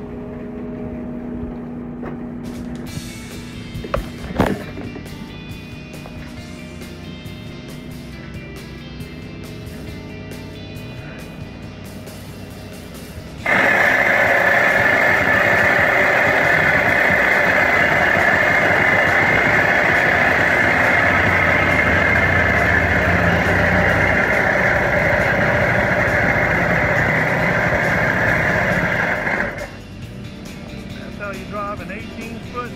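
Background music. About halfway through, a loud, steady machine noise starts suddenly and runs on until it cuts off just before the end. Earlier there are a couple of sharp knocks.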